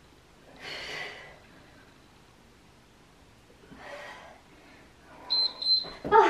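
A woman's heavy breathing during a hard bodyweight exercise: two sharp exhalations a few seconds apart, then louder effortful sounds near the end as the set finishes.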